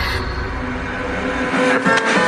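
Frenchcore electronic music in a breakdown: a deep held bass drone under sustained synth tones. The bass drops out about three quarters of the way through, and sharp hits come back in near the end.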